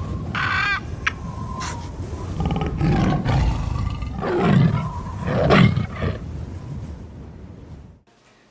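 Big cat roaring as an intro sound effect: about three deep roars in the middle, after a short trilling animal call about half a second in.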